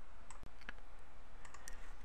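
A few faint, sharp clicks over a steady low hum.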